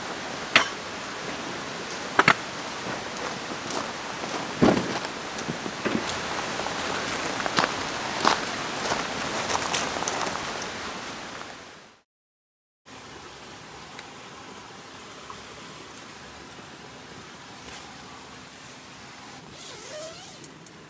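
Steady outdoor hiss with scattered clicks and knocks of camping gear being handled and packed. The sound fades out about twelve seconds in, then comes back as a quieter, even hiss with no knocks.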